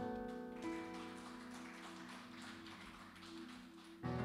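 Soft instrumental background music: a sustained chord, with further notes joining about half a second in, slowly fading.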